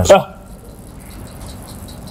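A short vocal sound at the very start, then a quiet lull with a few faint clicks of cutlery against ceramic bowls and plates.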